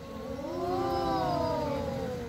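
A long, drawn-out wordless vocal sound from young voices, rising and then falling in pitch over about two seconds.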